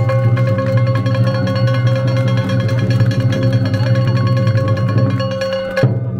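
Live festival music from performers on a lantern float: fast, even strikes on a metal gong over a steady held note and a low drone. The music stops abruptly just before the end.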